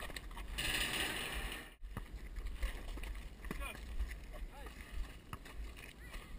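Wind buffeting a head-mounted action camera's microphone outdoors, as a steady low rumble. It swells into a louder rush for about a second and then cuts out for an instant just before two seconds in. Scattered light knocks and faint distant voices run under it.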